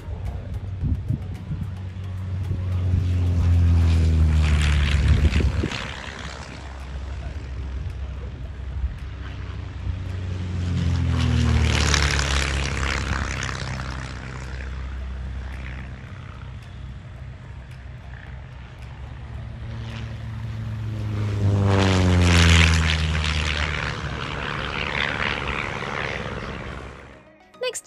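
Vans RV6 and RV7 light propeller aircraft making three low flybys. Each time, the engine and propeller note swells and then drops in pitch as the plane passes.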